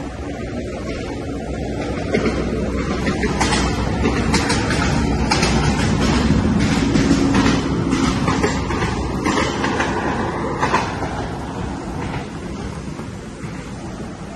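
A passing train: a low rumble that builds to a peak about halfway through and then fades, with rapid clicking and clatter over the middle.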